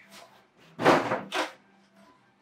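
Plastic packaging of a trading-card collection box being pulled and handled: two short rustling scrapes about a second in, the first louder.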